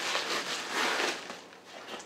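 A small cardboard box being pulled open and bubble wrap drawn out of it: irregular crinkling and rustling of cardboard and plastic, dying down near the end.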